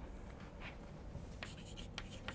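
Faint chalk strokes on a blackboard: a few short scratches and taps.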